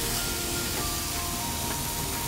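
Masala-coated meat sizzling steadily on a hot flat griddle, a continuous frying hiss, with soft background music.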